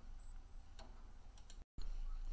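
Low steady hum with a few faint clicks. Near the end the sound drops out completely for a moment at an edit cut.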